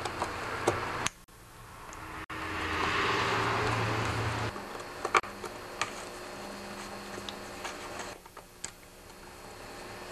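Screwdriver working Torx screws out of the handle of a concrete cut-off saw, with a few scattered light clicks of metal on metal. A soft rushing noise swells in the first half and stops suddenly about four and a half seconds in.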